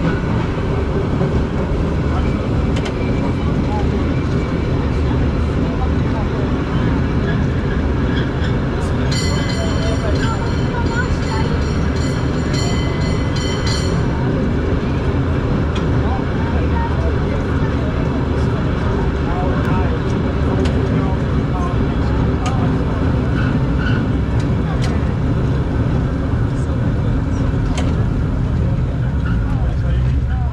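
Powell-Hyde cable car running along its rails, a steady low rumble heard from on board. About nine seconds in, a high-pitched squeal lasts about five seconds, with a few light clicks scattered through.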